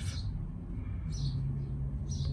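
A bird chirping: two short high chirps about a second apart, over a low steady hum.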